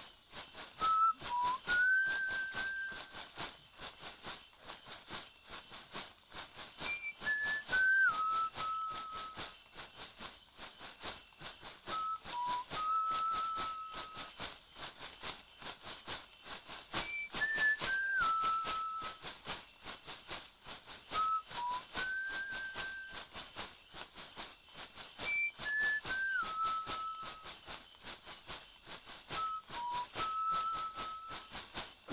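A person whistling an icaro, a slow melody of held notes with short slides between them, the phrase coming round every four or five seconds. A steady high hiss runs underneath.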